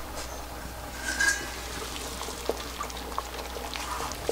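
Beef bone broth boiling hard in a large stainless-steel stockpot: a steady faint bubbling with scattered small pops. A brief squeak sounds about a second in.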